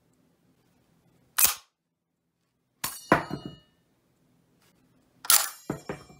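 Metal clicks and clinks from a Carcano rifle's bolt action and its steel en-bloc clip falling free. There is a single sharp click, then a pair of clicks with brief high ringing, then another ringing pair near the end.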